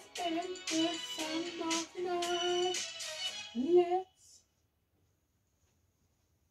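A solo voice singing the closing line of a song in held notes, the last one sliding up in pitch, then stopping abruptly about four seconds in.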